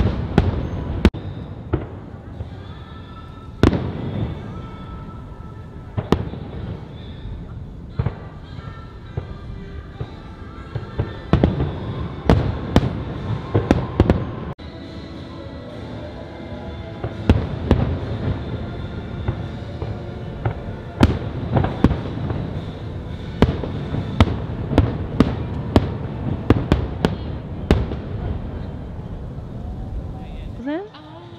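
Fireworks display: aerial shells bursting in sharp bangs, some singly and some in quick runs, over the show's music soundtrack. The bangs come thickest in the middle and again in the second half, with a brief break in the sound about halfway through.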